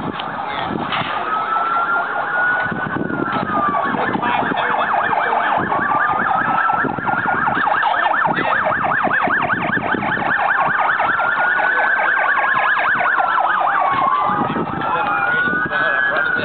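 Police car sirens, more than one at once, wailing in slow rising and falling sweeps that overlap, with a fast yelp in the middle.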